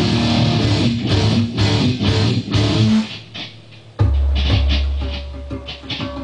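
Electric guitar playing rock chords in a steady strummed rhythm, which stops about three seconds in; after a short near-pause, a loud, low heavy part starts about a second later.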